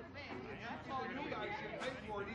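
Several voices talking over one another, faint and indistinct, like background chatter of a group arguing.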